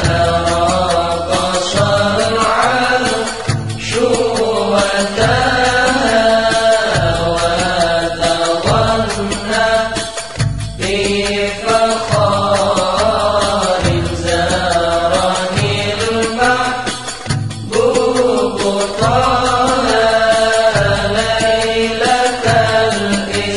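Sholawat, an Islamic devotional song, playing: a sung melody over an accompaniment with long held bass notes.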